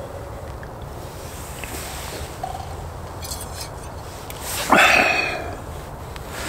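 A person sniffing once, loudly, a little under five seconds in, over a low steady background rumble.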